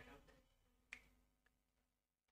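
Near silence with a faint sharp click about a second in, from a key press on a handheld calculator.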